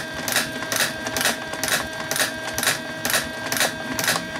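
Turn counter on a 3D-printed coil winder clicking once per turn as the coil former spins, about two clicks a second, with a faint steady hum underneath.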